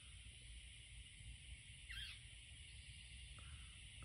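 Near silence: faint outdoor ambience with a steady high hiss, one short faint falling chirp about halfway through, and a faint click near the end.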